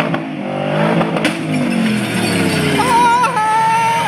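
Ford Mustang's engine revving hard as the car pulls away, with its rear tyres squealing in wheelspin during the last second or so.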